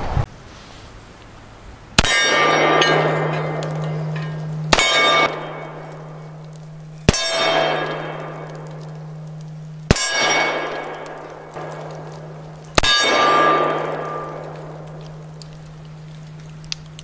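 Remington New Model Army cap-and-ball revolver fitted with a Taylor's cartridge conversion cylinder firing five shots, one every two and a half to three seconds, the first about two seconds in. Each shot is followed by a metallic ringing that fades over a second or two.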